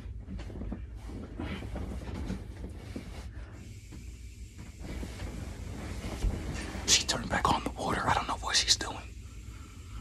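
Bedding rustling and shifting as a person settles on a bed and pulls a blanket over himself, louder from about seven to nine seconds in, over a low steady hum.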